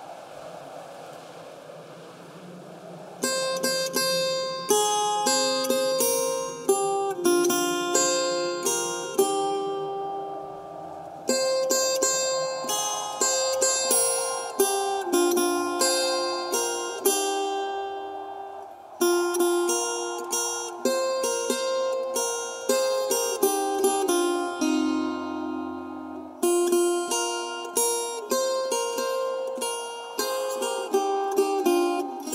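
Bolivian charango playing a plucked melody over a soft sustained backing. The melody comes in about three seconds in and runs in phrases with short breaks between them.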